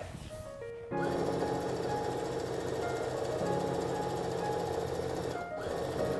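Background music with held notes comes in about a second in, over a domestic sewing machine running steadily as it stitches cotton gingham fabric.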